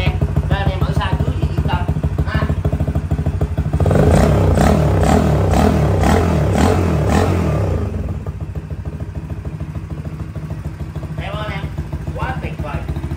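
Honda CD50's small single-cylinder four-stroke engine running at a raised idle, revved up and down for about four seconds starting about four seconds in, then settling back to idle.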